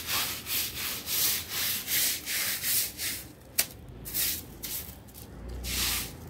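Stiff stick broom scrubbing wet cement slurry into a concrete roof surface in quick repeated strokes, two or three a second: the rubbing stage of cement-ghotia waterproofing. The strokes pause a little past the middle, where there is one sharp click, and start again near the end.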